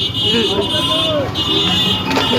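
Busy street traffic with a steady, high electronic tone that breaks off briefly a little after a second in and then resumes.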